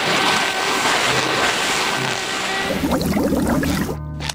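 A loud, steady rushing noise like wind or surf, with faint music underneath. It gives way to low wavering tones about three seconds in.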